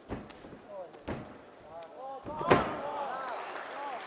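Thuds of fighters' bodies and strikes in an MMA ring: two sharp thuds in the first second or so, then a loud slam about two and a half seconds in as a fighter is taken down onto the ring canvas. Crowd shouts rise around the slam.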